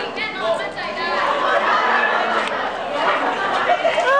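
Several people talking and exclaiming over one another in overlapping chatter, with no single voice standing out.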